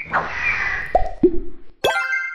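Cartoon sound effects for an animated logo reveal: a swish, then two quick upward-gliding bloops about a second in, then a sharp hit with a bright chime that rings on near the end.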